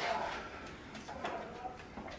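Soft scraping of a long knife slicing thin pieces off a leg of cured ham, under faint voices in a small kitchen.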